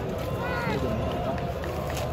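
Spectator crowd at a football match: a steady din of the stands, with nearby spectators' voices calling out, one voice prominent about half a second in.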